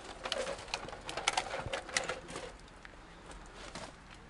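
Dry leaves, ivy stems and twigs crackling and rustling as someone pushes through undergrowth on foot: a quick run of sharp snaps for the first two and a half seconds, then quieter.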